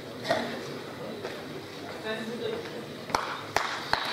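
Faint voices talking in a large hall, with three sharp clicks near the end.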